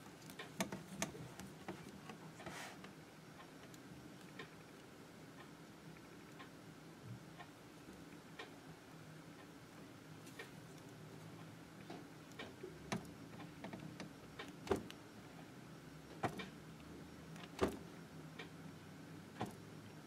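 Faint, scattered sharp clicks and taps of hand stone-setting work on a pavé-set gold ring in a ring holder: a steel setting tool and the holder knocking against the metal. The clicks come a few seconds apart, more often in the second half, over a low steady hum.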